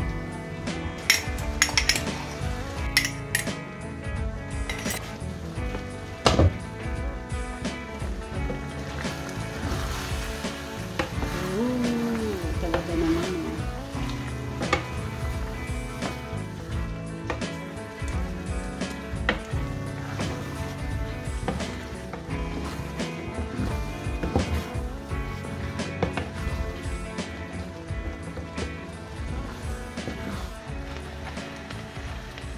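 A wooden spatula knocks and scrapes against a frying pan at irregular intervals as a thick meat sauce is stirred, with guitar background music playing throughout.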